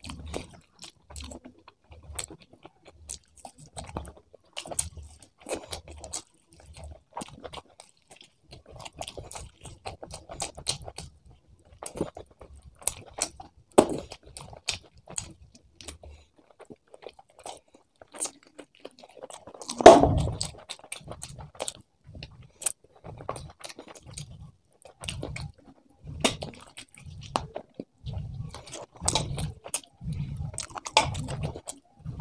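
Close-miked chewing and wet mouth sounds of a person eating rice, curry and chicken by hand, with many small clicks over a steady chewing rhythm of one to two chews a second. The chewing pauses briefly past the middle, then a single louder bite or crunch comes about twenty seconds in before the chewing resumes.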